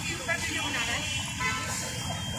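Street ambience: a steady low rumble of road traffic, with indistinct voices of people nearby.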